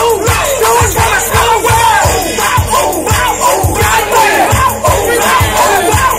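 Loud hip-hop track with heavy, repeated bass hits, played for a dance battle, with a crowd hollering and shouting over it.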